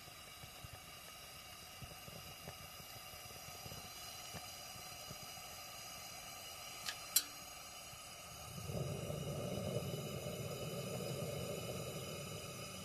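Camping lantern burning with a steady, faint hiss. Two sharp clicks come about seven seconds in, and a louder, deeper noise joins in from about nine seconds.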